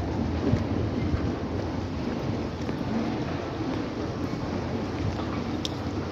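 Steady low rumbling noise in a railway station concourse, with a few faint clicks.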